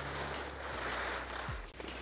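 Skis sliding over snow during a turn, a steady scraping hiss.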